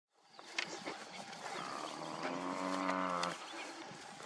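Cape buffalo giving one long, steady bellow about two seconds in: the death bellow of a dying buffalo.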